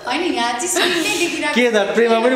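Speech: a woman talking.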